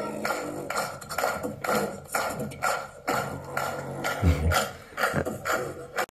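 Beatboxing into a microphone, played back from a laptop's speakers: a steady beat of sharp percussive sounds with a deep bass sound about four seconds in.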